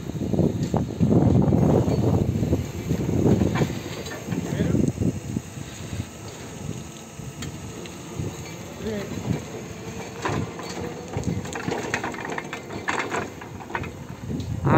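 Linde R14 electric reach truck driving and manoeuvring with its forks lowered. Near the end there are scattered scraping sounds as the forks drag on the ground, scratching it.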